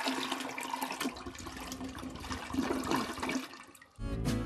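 A toilet flushing: a rush of swirling water that starts suddenly and dies away near the end.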